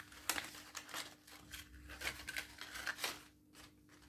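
Paper strips rustling and crinkling in the hands as they are bent and slotted into one another: a few short, sharp rustles with a quieter lull near the end.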